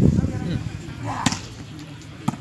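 A volleyball struck hard once, a single sharp smack about a second in, with voices around it.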